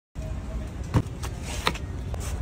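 A long kitchen knife striking cabbage on a wooden chopping board about three times, the first and loudest with a dull thump about a second in, over a steady low rumble.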